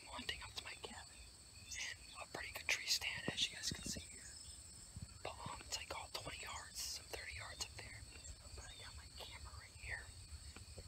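A young man whispering in short, breathy phrases.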